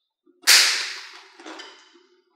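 Contents of a handbag clattering and rustling as a hand rummages through it. A sharp, loud rattle about half a second in dies away over about a second, and a weaker one follows near the end.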